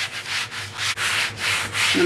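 A baren rubbed in circular strokes over printmaking paper on a gel printing plate: a dry rubbing scrape that swells and fades two to three times a second, burnishing the paper to lift the print.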